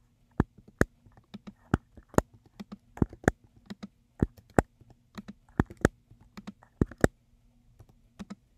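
Computer keyboard typing: a run of irregular key clicks, some struck harder than others, roughly three or four a second.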